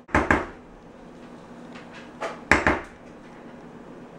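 Spatula knocking and scraping against a plastic mixing bowl while batter is scraped out of it: two short clusters of sharp knocks, about two seconds apart.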